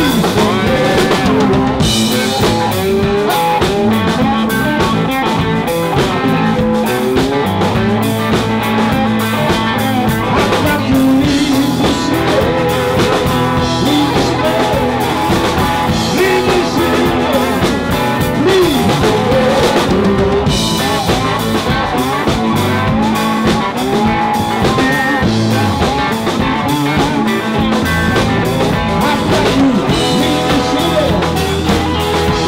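Live blues band playing: electric bass, electric guitar and drum kit, with a harmonica played into a hand-held microphone. The sound is loud and even throughout, with no breaks.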